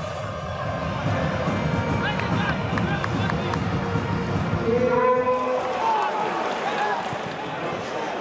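Football stadium crowd noise: a steady wash of many voices, with a few held, sung or shouted notes standing out about five seconds in.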